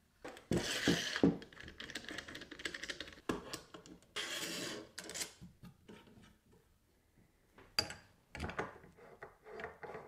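Metal miter gauge parts being handled and fitted together on a plywood workbench: rubbing and scraping of the aluminium fence and bar against wood, then a sharp click and a few light knocks late on as the fence is seated on the gauge head.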